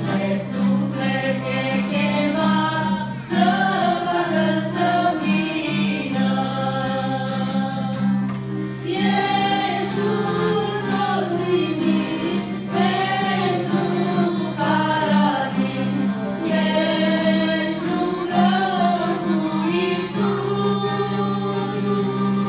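A small group of women singing a church hymn together in harmony from song sheets, with a steady low note held underneath.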